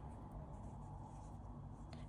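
Faint, soft rubbing of acrylic yarn crochet fabric being turned over in the hands, over a low steady room hum.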